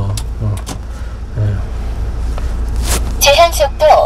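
Cabin noise of a manual-transmission Kia training truck driving on the road: a steady low engine and road rumble. A few words of speech come in near the end.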